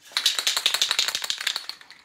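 Aerosol can of Minwax fast-drying polyurethane being shaken hard, its mixing ball rattling rapidly inside to mix the finish before spraying. The rattling starts just after the opening and stops shortly before the end.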